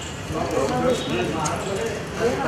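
Indistinct voices of several people talking, with a couple of sharp clicks or knocks.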